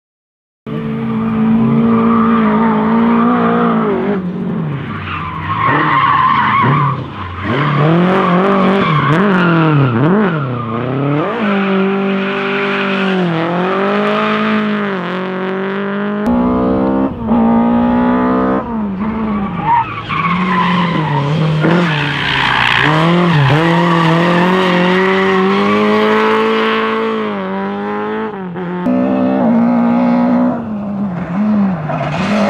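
Classic Lada rally car engines revving hard, their pitch climbing and dropping repeatedly through gear changes and lifts, starting about a second in. Tyres squeal as the cars slide through corners on tarmac.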